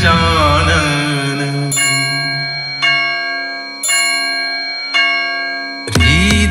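Devotional song music: a sung note trails off in the first second. Then a bell-like chime in the arrangement strikes four times, about a second apart, each stroke ringing out and fading.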